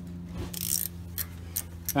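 Ratcheting wrench clicking in short, irregular strokes as it backs out a brake caliper bolt, over a steady low hum.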